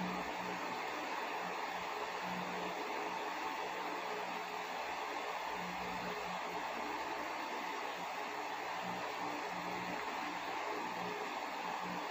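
A steady, even rushing noise with a faint low hum underneath.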